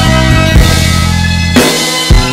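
Instrumental karaoke backing track with no lead vocal: held chords over a deep bass line and a slow drum beat, a hit about once a second.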